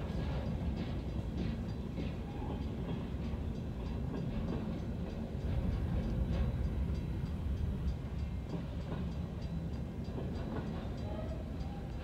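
Freight train of container cars rolling steadily past a grade crossing, a continuous low rumble of wheels on rail, heard from inside a car's cabin.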